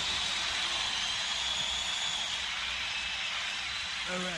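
Cymbals ringing out as the song ends: a steady high hiss that slowly fades.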